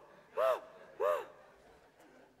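A man's voice making short, wordless gasp-like exclamations, three in quick succession, each rising then falling in pitch. They mimic a nervous, uncomfortable person.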